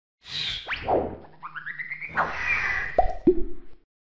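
Cartoon sound effects of an animated logo intro: a swish, a quick upward zip, then a rising tone. Near the end come two sharp pops a third of a second apart, each sliding down in pitch.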